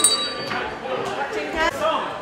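A small handbell rings once at the start: a bright ding that fades within about half a second, with people talking over it.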